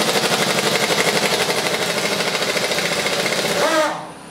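Pneumatic impact wrench hammering on a Jeep wheel's lug nut in a rapid, even rattle, starting abruptly and winding down just before the end.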